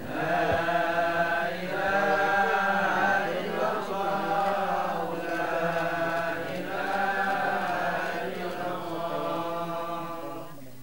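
A group of voices chanting an Islamic devotional prayer in unison, held in drawn-out phrases of a couple of seconds each with short breaks between them.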